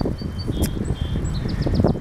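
Wind buffeting the microphone and low rumble from a moving bicycle, with small birds chirping high above it; a quick run of chirps comes about a second and a half in.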